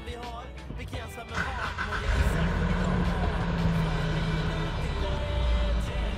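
Nissan Terra's 2.5-litre diesel engine started with the push-button. About a second and a half in its note comes up and settles into a steady idle.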